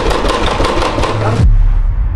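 A fist pounding rapidly and repeatedly on a closed interior door. The pounding cuts off suddenly about a second and a half in, leaving a low rumble.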